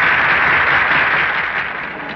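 An audience applauding on a 1930s film soundtrack. The applause dies down near the end.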